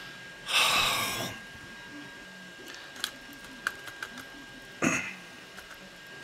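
A man's loud exhale, like a sigh, then a few light clicks from the HP 48SX calculator's plastic case and parts as they are handled and pried apart, and a second short breath near the end.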